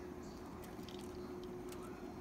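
A puppy mouthing and tugging at a mesh door screen, giving a few faint small clicks and rustles over a steady low hum.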